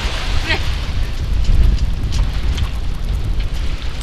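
Wind buffeting the microphone on a sailboat under way, with water rushing along the hull. A short laugh comes about half a second in.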